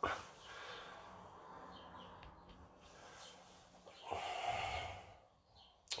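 Faint room tone, with a person breathing out once, audibly, about four seconds in.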